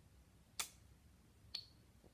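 Near silence broken by two small, sharp clicks about a second apart, the second fainter with a brief high ring.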